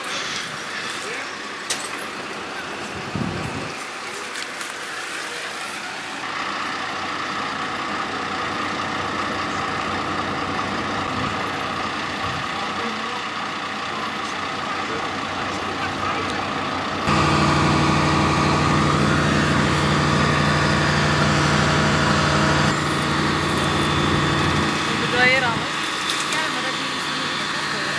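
A fire truck's engine running steadily. It gets clearly louder for several seconds from about two-thirds of the way in, then drops back.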